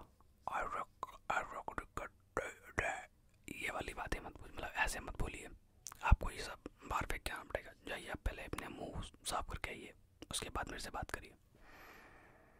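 A man whispering close to the microphone, in short phrases too soft for words to be made out, broken by brief pauses.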